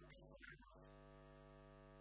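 Faint, steady electrical mains hum with a stack of evenly spaced overtones, broken by a short faint sound in the first second.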